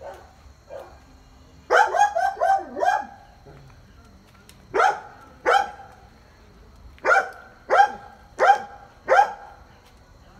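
Dog barking: a quick run of five barks about two seconds in, two more barks near the middle, then four evenly spaced barks near the end.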